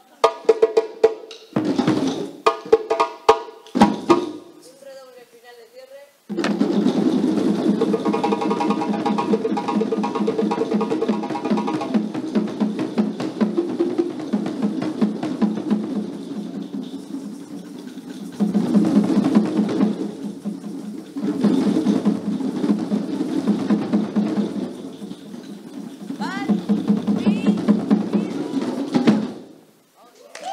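Djembes and other hand drums played as a group: a few separate strokes at first, then from about six seconds in a long, fast roll that swells and fades several times and stops suddenly just before the end.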